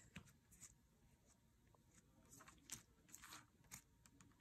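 Near silence, with a few faint soft ticks as a pastry brush dabs egg wash onto braided challah dough on parchment paper.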